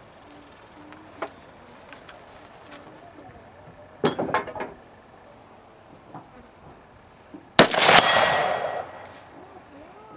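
A single shot from a Stag Arms AR-style rifle in 6.8 SPC: a sharp crack about three-quarters of the way in, with a long echoing tail. Under half a second later comes a second, fainter crack and a steady metallic ring, typical of the bullet striking a steel gong target at 100 yards.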